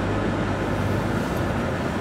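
Car running at low speed, heard from inside the cabin: a steady low engine hum under an even hiss.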